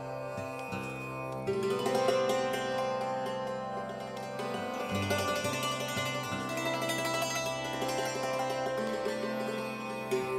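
Santoor, an Indian hammered dulcimer, played with light hammers: quick runs of ringing struck string notes over low sustained notes, growing busier and louder about a second and a half in.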